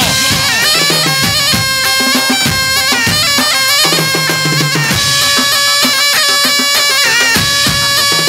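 Loud dance music: a shrill reed pipe plays a steady melody over large double-headed bass drums struck with sticks, each stroke giving a deep boom.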